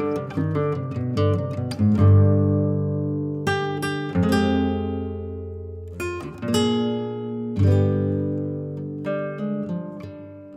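Background music on acoustic guitar: picked notes and strummed chords that ring out and fade between strokes.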